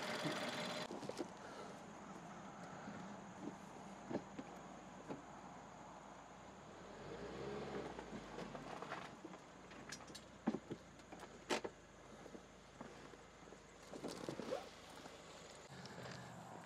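Faint outdoor background with scattered light clicks and a brief low rumble about seven to eight seconds in.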